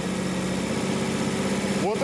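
Car engine idling steadily, warmed up with its thermostat open and the water pump circulating coolant, a level low hum with no change in speed.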